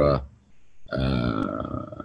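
A man's drawn-out hesitation sound, a held level-pitched 'uhh' of about a second between words of his talk, heard through a video-call connection.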